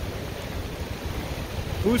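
Steady rushing noise of a fast-flowing river and heavy rain, with wind buffeting the microphone in a low, uneven rumble.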